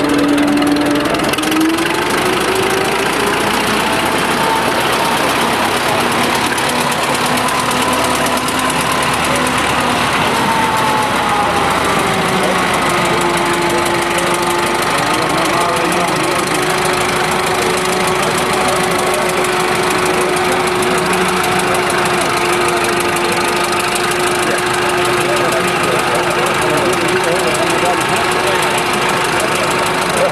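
WD motor plough's engine running under load as it pulls its plough through a stubble field. Its pitch rises in the first couple of seconds and then holds steady, with voices in the background.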